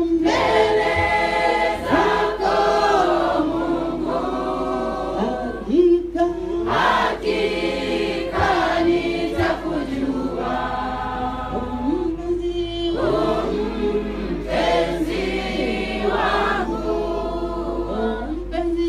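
A church congregation singing a hymn together, many voices on long held notes.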